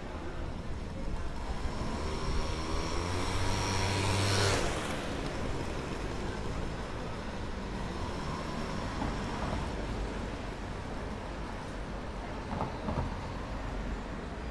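Street traffic, with one motor vehicle passing close by: its engine builds and is loudest about four and a half seconds in, then falls back into the general traffic noise.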